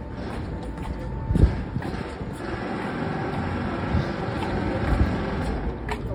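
Steady rumble of a nearby vehicle with a faint whine, and two low thumps, about a second and a half in and again about five seconds in.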